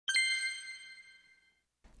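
A single bright bell-like chime struck once, ringing out in several high tones and fading away over about a second and a half: a transition ding marking the logo card between sections.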